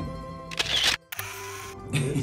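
Background music with a camera-shutter sound effect: a quick rising swish about half a second in, a brief dropout, then a hiss of noise lasting about half a second.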